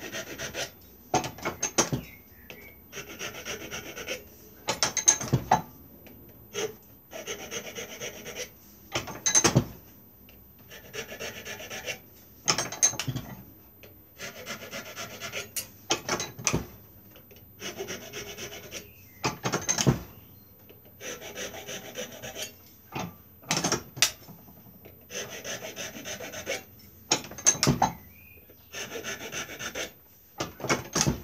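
Hand file rasping on an ash walking-stick shank in repeated strokes of about a second each, with short pauses and sharp knocks between them.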